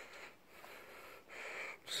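Faint breathing close to the microphone: one breath fading out just after the start and another, an intake just before speech resumes near the end.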